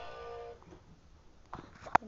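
Recorded song from an animatronic singing fish toy ending on a held note about half a second in, followed by a quiet stretch and a single sharp knock near the end.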